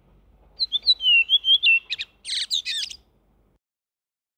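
Redwing singing: a few clear whistled notes that glide downward in pitch, then a short scratchy twitter, cut off about three and a half seconds in. The background noise is largely stripped out by noise reduction.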